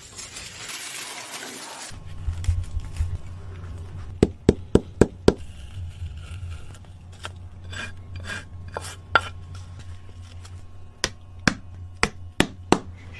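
Sharp clicks and taps of hand work with shoemaking tools on a layered shoe sole: a quick run of five about four seconds in, then scattered single clicks, over a low steady hum.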